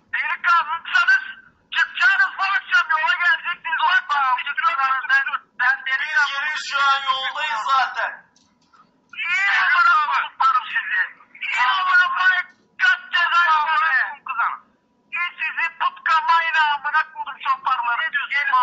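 Speech heard through a telephone speaker: thin-sounding voices talking almost without a break, pausing briefly twice.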